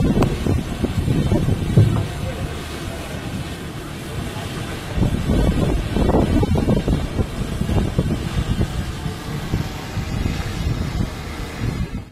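Wind buffeting an outdoor microphone, a fluctuating low rumble that swells about five seconds in.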